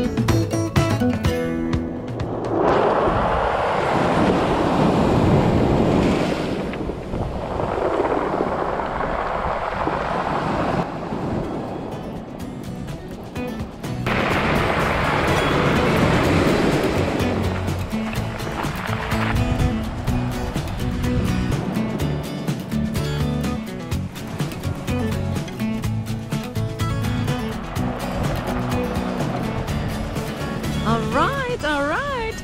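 Small sea waves breaking and washing over a pebble beach, with three loud surges of surf in the first twenty seconds, under background music.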